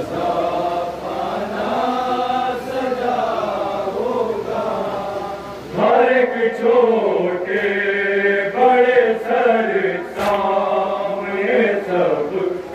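Men of an anjuman reciting a noha, a Shia lament, as unaccompanied chant; the voices get louder about six seconds in.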